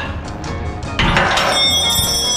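Background music with a beat. About a second in, a loud metallic clatter rings on for about a second, a metal hand tool landing on the concrete shop floor.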